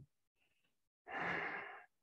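A man's single audible breath, caught close on a clip-on microphone, a soft rush of air lasting under a second that starts about a second in.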